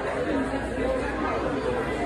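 Steady background chatter of many people talking at once in a crowded shop, with no single voice standing out.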